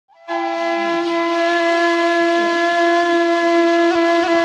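Saluang, the Minangkabau bamboo end-blown flute, holding one long steady note that opens a classic Minang saluang piece.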